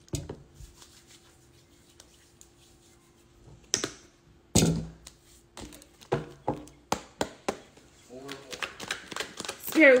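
A tarot deck handled and shuffled by hand: scattered sharp card snaps and taps, a couple of louder knocks midway, then a run of quick taps.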